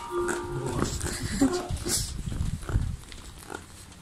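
A person's voice making drawn-out, animal-like squealing noises in the first second and a half, followed by a low rumbling noise for about a second.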